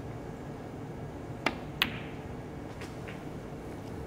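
A snooker cue tip strikes the cue ball with a sharp click, then the cue ball clicks against a red about a third of a second later. Two much fainter knocks follow about a second after that, as the red is potted.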